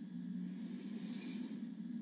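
Faint steady hum and hiss of background room tone on a video call, with no one speaking while the connection has frozen.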